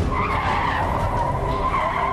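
Car tyres squealing as a sedan speeds off through a hard turn, the squeal wavering in pitch and fading near the end, with the car's low running noise under it.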